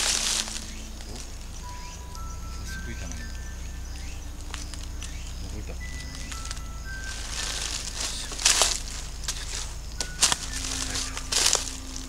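Footsteps crunching and rustling through dry fallen leaves, with a few louder crunches in the second half. Behind them, a faint sparse melody of single held notes.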